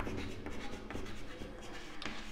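Chalk writing on a chalkboard: a run of short scratches and taps as the chalk forms letters.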